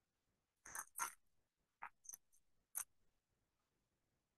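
Near silence, broken by a few faint, short rustles and clicks as a ball of yarn and its paper label are turned in the hands.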